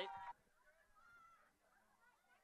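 Near silence after the last spoken word, with only faint wavering pitched traces too weak to name.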